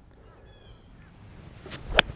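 Golf iron swung through the ball: a short swish of the club building to one sharp, crisp click of clubface on ball at the very end, the sound of a solidly struck shot.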